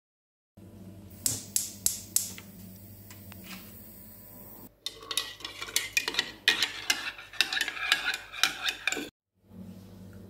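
A metal spoon stirring a drink in a ceramic mug: quick repeated clinks and scrapes against the mug's sides, starting about five seconds in. Before that come a few sharp clicks over a low steady hum.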